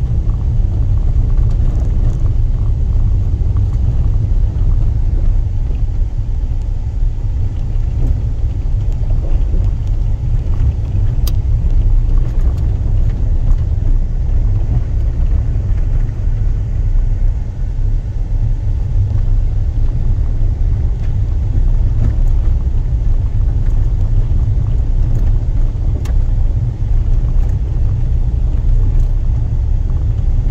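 Car driving along an unpaved gravel road: a steady low rumble of engine and tyres on the loose surface, with a few faint ticks.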